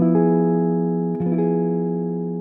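Archtop electric jazz guitar sounding the major diminished chord, a diminished chord with a major seventh that sounds a little crunchier than a plain diminished chord. It is struck and left ringing, and a second voicing is struck about a second in and let ring.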